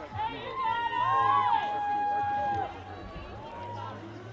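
Several spectators shouting long, drawn-out calls to a climber on the route, the voices overlapping and loudest in the first half, over a steady low hum.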